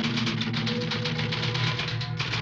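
A closing music sting: fast, evenly repeated strokes, about ten a second, over low held notes.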